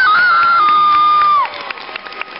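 A person's high-pitched scream, held for about a second and a half with a few jumps in pitch, then falling away and cutting off; faint clicks follow.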